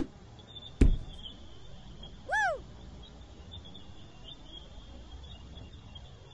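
A golf club clicks against a ball, and under a second later a sharp, loud pop as the chipped ball knocks the cork out of a champagne bottle. About two seconds in, a short whistle-like call rises and falls in pitch.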